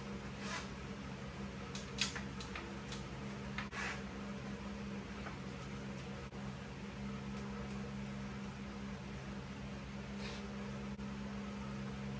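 Steady hum of a fan or motor-driven appliance running in a small room, with a few brief rustles and soft knocks.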